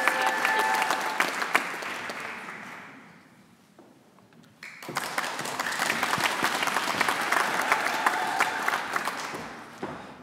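Audience applause in two rounds: the first fades out about three seconds in, then after a second's near silence a new round starts suddenly and tails off near the end. A single voice cheers briefly at the start.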